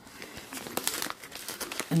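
A clear plastic pocket-letter page of trading-card sleeves crinkling and crackling as it is handled and turned over, a run of irregular crackles.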